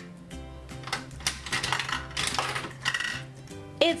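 Toy gumball bank's metal coin mechanism being turned by hand: a run of clicks and rattles as the coin drops inside and a gumball is let out, over background music.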